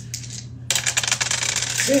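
Dice clattering: a dense run of rapid clicks starting a little under a second in and lasting about a second and a half.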